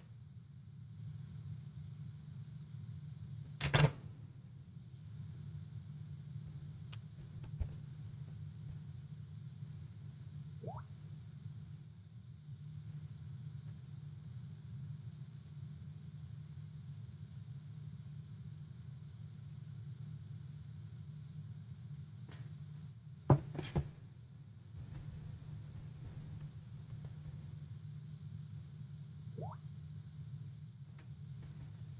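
Open-microphone room tone: a steady low hum with faint hiss. It is broken by two sharp knocks, about four seconds in and again near twenty-three seconds, and by two brief faint rising chirps.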